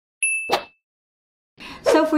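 Subscribe-animation sound effects: a single bright ding, with a sharp click about a quarter second later, both over within about half a second.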